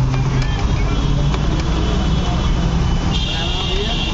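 Busy roadside ambience: steady road-traffic rumble mixed with the voices of a crowd talking.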